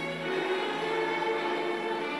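Orchestral film score playing slow, sustained held chords, with a new chord entering right at the start.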